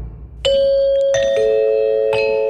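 Bell-like chime of a programme ident: three notes struck one after another, starting about half a second in, the second higher and the third lower. Each note rings on under the next.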